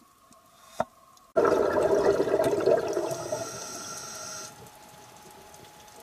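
Scuba diver's exhalation through the regulator underwater: a sudden rush of bubbles about a second in that fades away over about three seconds.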